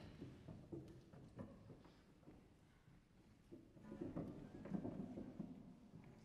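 Harp and clarinet playing quietly: soft plucked harp notes, swelling in the second half.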